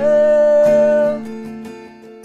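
A man singing a long held note of the sung chorus over strummed acoustic guitar. The note breaks off just over a second in, and the guitar chord rings on more quietly.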